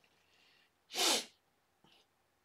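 A single human sneeze about a second in: one short, sharp burst.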